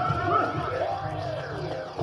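Loud amplified live band music from a stage PA, with a heavy bass line under sliding, warbling pitches; it thins a little near the end.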